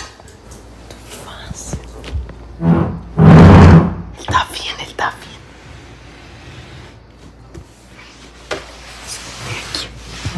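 A person's voice close to the microphone: one loud vocal sound about three seconds in, among soft rustling and a few small knocks, as if the camera were being handled.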